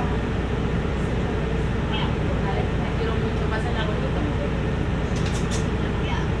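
Cabin of a Mercedes-Benz city bus standing still: a steady low engine hum, with passengers talking faintly in the background.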